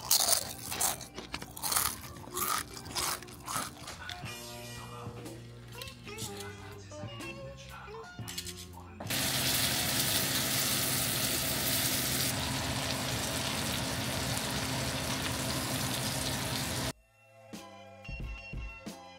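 Crisp ridged potato chips being crunched in sharp repeated bites over background music for the first few seconds. From about halfway in, salmon fillets sizzle steadily in butter in a stainless frying pan, a loud even hiss that cuts off suddenly near the end.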